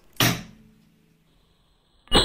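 A single short, sharp click about a quarter of a second in, fading to near quiet with a faint steady hum.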